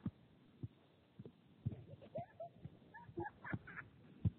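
A soccer ball being juggled on foot: a string of short, dull low thumps at uneven intervals, roughly one every half second, as the ball is kicked up.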